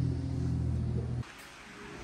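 A steady low hum from running machinery, which stops abruptly a little over a second in, leaving faint room noise.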